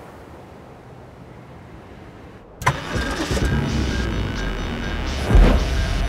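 Faint wind-like hiss, then about two and a half seconds in a sudden loud start: a Volvo SUV's engine being remote-started and running, with music coming in over it.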